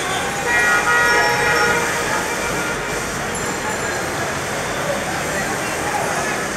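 A vehicle horn sounds one steady blast of about a second and a half near the start, over continuous street traffic noise.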